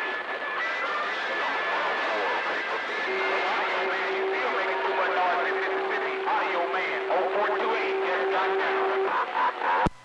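CB radio receiving on channel 28: a steady hiss of band noise with faint, garbled distant voices and steady carrier whistles, a high one in the first few seconds and a lower one from about three to nine seconds in. The noise cuts off suddenly just before the end as the signal drops.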